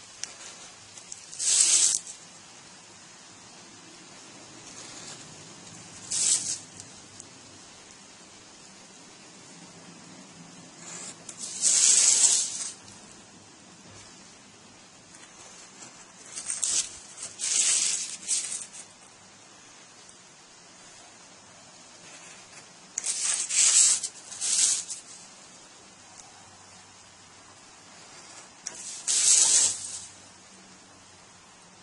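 Hobby knife blade drawn through paper along a steel ruler: short scratchy cutting strokes, six or so in all, a few seconds apart, some in quick pairs.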